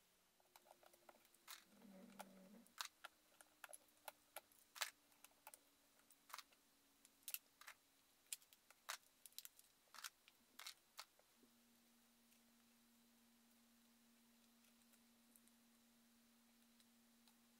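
Faint, irregular clicks and taps of hard plastic being handled: toy-brick mold walls and a silicone mold worked by hand. The clicks stop about eleven seconds in, leaving near silence with a faint hum.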